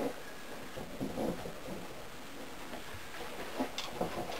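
Faint handling sounds as a plastic PVC fitting is turned by hand into the threaded hole of a plastic barrel lid, with a light click or knock near the end.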